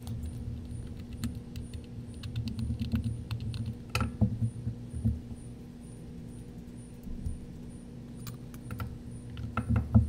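Small screwdriver undoing the back-cover screws of a rugged Sonim XP5S phone, then the back cover and battery being lifted off: scattered small clicks and scrapes, with a sharper click about four seconds in and a louder one near the end.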